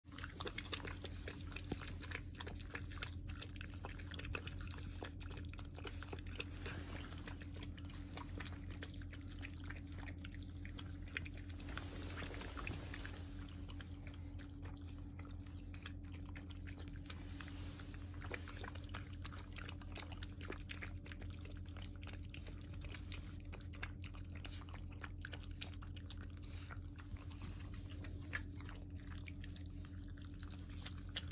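Two puppies eating from steel bowls: a steady run of small chewing and biting clicks, over a faint steady low hum.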